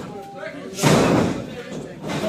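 A heavy impact on the wrestling ring about a second in, a loud slam that rings on briefly in the hall, with crowd voices around it.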